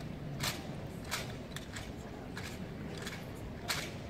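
Rifle drill by a drill team: about half a dozen sharp, short clacks of hands and rifles at irregular spacing, over a low steady rumble of the arena.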